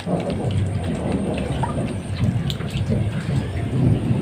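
An otter chewing a small fish, a few faint crunching clicks, under a steady low rumble of handling noise on the microphone.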